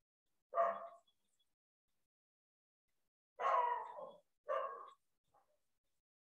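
A dog barking three times: one bark about half a second in, then two more about a second apart in the second half.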